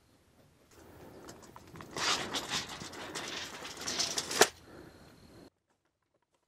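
Steel tape measure blade retracting into its case with a rattling whir that builds up over a couple of seconds and ends in a sharp snap as the hook hits the case.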